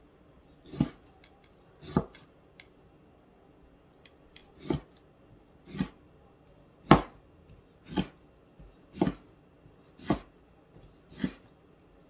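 Cleaver chopping through raw tanguigi (Spanish mackerel) fillet onto a wooden cutting board: sharp knocks about once a second, nine in all, with a pause of a couple of seconds after the second.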